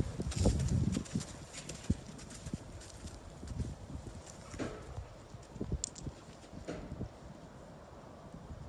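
A ridden horse's hoofbeats on a dirt arena, loud as it passes close in the first second, then growing fainter as it moves away.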